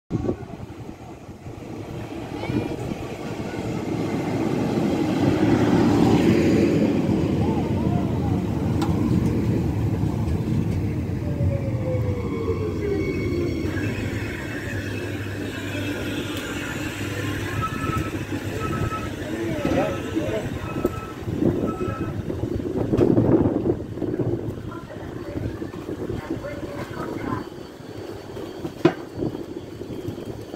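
Regio 2N double-deck electric multiple unit arriving at a platform, its running noise building to a peak and then a whine falling in pitch as it brakes to a stop. Once stopped, a series of short beeps sounds from the doors as they open.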